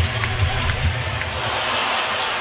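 Basketball dribbled on a hardwood court, a few bounces, over a steady wash of arena crowd noise.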